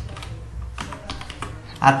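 Computer keyboard being typed on: several separate keystrokes as a word is finished in a spreadsheet cell and the cursor moves to the next cell.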